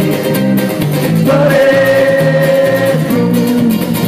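A live ukulele band plays, with a strummed ukulele, drums and a stepping bass line. In the middle, a voice holds one long note for about two seconds.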